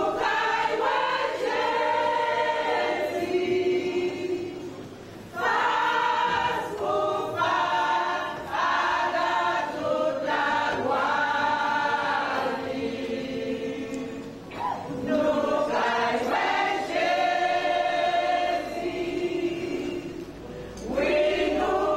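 A church choir of mostly women's voices singing a hymn together, in long phrases with brief pauses about five and fifteen seconds in.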